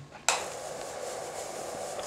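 A sudden knock about a quarter second in, then a steady rushing noise that holds at an even level.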